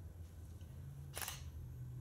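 Pause between spoken lines: low steady hum of the hall's sound system, with one short sharp click a little over a second in.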